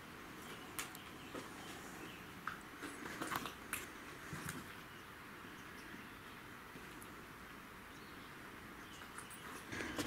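Faint scattered clicks and light knocks over quiet room tone, most of them in the first half, typical of people shifting about among debris in an empty workshop.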